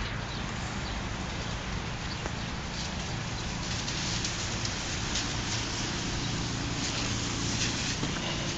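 Steady hiss of wet weather on a slushy city street, with a low rumble underneath and a few faint ticks.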